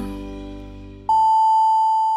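Jingle music fading out, then about a second in a single long, loud beep starts and slowly fades: a radio time-signal tone marking the top of the hour.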